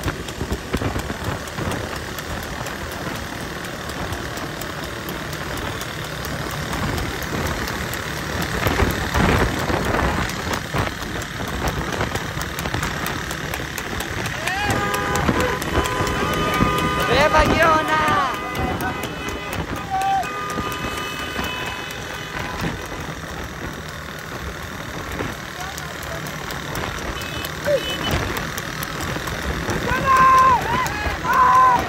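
Motorcycle engines running all around, with men shouting over them. About halfway through, several steady held tones and louder shouts rise over the engines for a few seconds.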